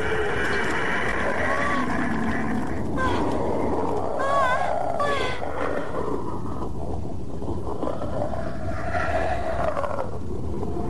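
A monster's roaring over a dense, steady rumble, with wavering, warbling cries about three to five seconds in.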